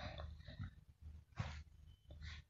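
A woman's faint breathing close to the microphone, with one short sharp intake of breath, like a sniff, about one and a half seconds in, over a low steady hum.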